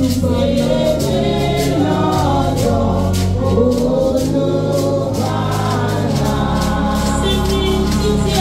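Congregation singing a hymn together over a band accompaniment of sustained bass notes and a steady beat.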